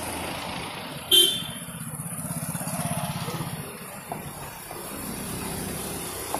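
Road traffic: a vehicle horn toots once, short and loud, about a second in. A vehicle engine runs close by with a fast pulsing beat, over a steady bed of street noise.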